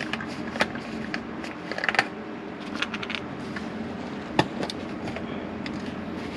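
Scattered small clicks and knocks as a plastic motor-oil jug is handled with gloved hands, over a steady low background hum.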